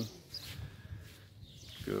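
Faint outdoor background noise during a short gap in the talking, with no distinct event; the man's voice returns near the end.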